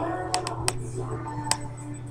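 A few light, sharp clicks spaced irregularly over a steady low hum.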